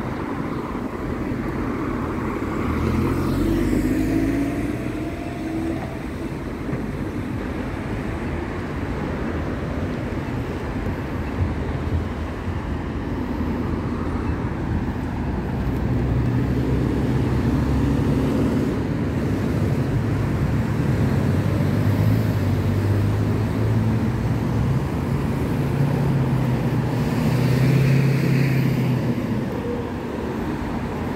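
City street traffic: cars driving through and turning at an intersection, their engines and tyres a steady hum that swells as vehicles pass close, about four seconds in and again near the end.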